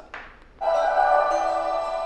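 Music starting suddenly about half a second in, a held chord that slowly fades, played back through the Nebula Cosmos Max 4K projector's built-in speaker as an audio test.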